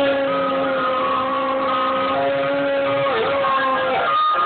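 Chocolate Labrador howling along to ice cream van music: one long held howl that sinks slightly in pitch, with a brief dip about three seconds in, over the van's chime tune.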